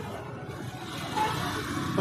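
Street traffic passing, a steady noise that grows louder about halfway through.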